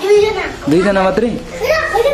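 Young children's voices talking and calling out.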